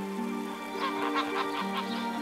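Canada geese honking in a quick run of short calls that starts about a second in, over steady background music.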